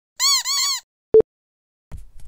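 Cartoon computer sound effects: two quick electronic chirps, each rising and falling in pitch, then a single short beep about a second later.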